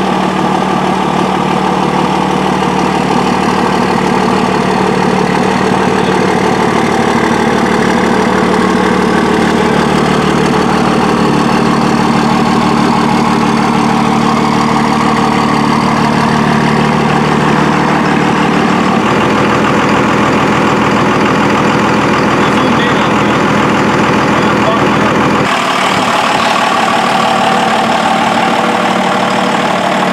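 Dodge Ram pickup's twin-turbo Cummins diesel engine idling steadily. The pitch of the running shifts about two-thirds of the way through, and the sound changes abruptly again near the end, with less bass.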